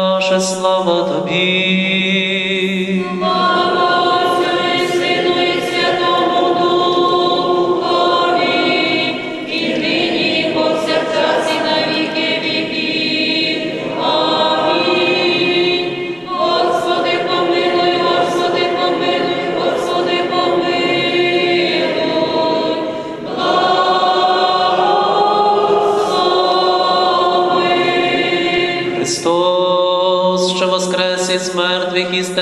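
A priest's intoned chant holds one low note into the first seconds, then a church choir sings a Byzantine-rite liturgical response in several parts, in sustained phrases with short breaths between them.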